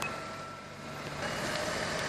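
Helicopter lifting off and climbing: steady turbine and rotor noise with a thin, steady whine, dipping briefly early on and then building again.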